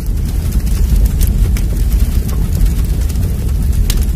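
Fire sound effect for an animated logo: a loud, steady low rumble with a few sharp crackles.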